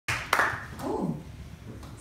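Tail of audience applause fading away, with a sharp knock from the microphone being handled about a third of a second in and a short voice sound about a second in.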